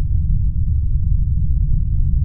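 Loud, deep cinematic sound-design rumble with a steady low hum running through it, the kind of drone laid under a film title.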